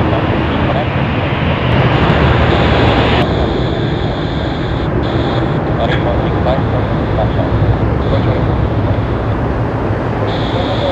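Twin-engine jet airliner climbing out after takeoff, with steady turbofan engine noise. The sound changes abruptly about three seconds in.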